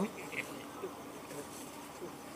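Faint background noise during a pause in speech, with a low steady hum and a few soft, brief sounds.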